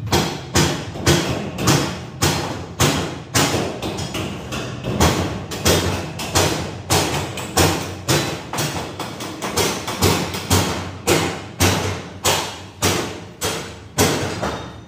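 Hammer blows on the steel frame of a truck cargo cage, struck evenly about two times a second, each with a short metallic ring.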